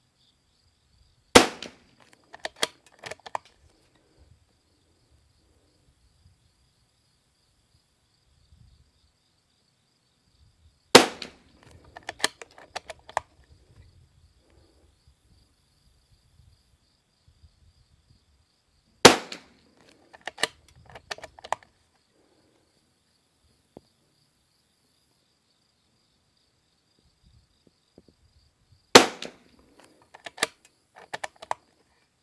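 Four shots from a Christensen Arms Ranger 22 bolt-action .22 LR rifle firing RWS R50 ammunition, spaced about eight to ten seconds apart. Each shot is followed by a quick run of clicks as the bolt is worked to eject the case and chamber the next round.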